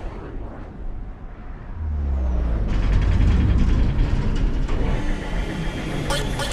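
Action-trailer vehicle sound effects: a quieter lull, then a deep low rumble sets in about two seconds in, joined about a second later by a loud, dense car-engine sound.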